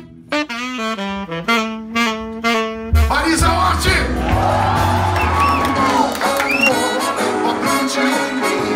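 Live saxophone playing a solo phrase of held notes that step up and down in pitch. About three seconds in, the full jazz band comes in under it with bass and drums.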